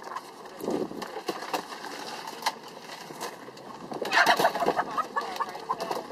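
Laying hens clucking and squawking while being lifted by hand into plastic poultry crates, with a burst of rapid calls about four seconds in. Scattered knocks of plastic crates run under them.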